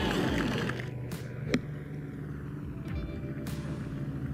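A crowd's cheering dies away in the first second, then the single sharp click of a golf club striking the ball on a short chip shot comes about a second and a half in. Soft background music comes in near the end.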